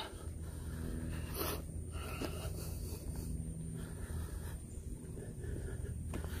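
A person breathing close to a phone microphone while walking, with a few short breaths or sniffs over a low steady hum.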